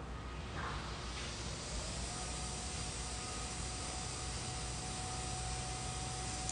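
Steady hiss of background noise with a low hum beneath it; a faint, thin steady tone joins about two seconds in.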